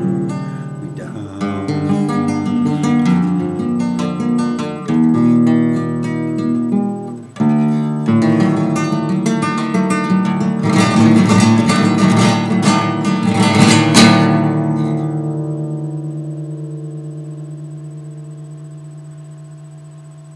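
Acoustic guitar playing the closing bars of a blues song. Picked notes run for about seven seconds, followed by a brief break and then fast strummed chords. A final chord is left to ring and fade away over the last six seconds.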